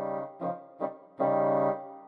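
A short musical interlude of about four held notes with a keyboard-like tone: two brief notes early, then a longer note a little past the first second that fades out near the end.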